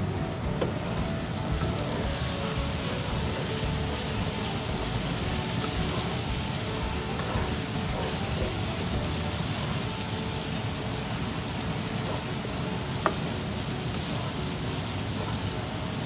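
Thick spiced taro curry sizzling steadily in a nonstick pan while it is stirred with a wooden spatula, with a single sharp tap about three-quarters of the way through.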